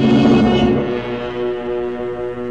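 Dramatic orchestral soundtrack music: a held, brass-heavy chord that swells loudest in the first half-second and then sustains.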